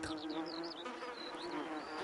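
Sound-effect ambience of an insect buzzing steadily, with a few short high chirps over it, for a calm sunny day in the trenches.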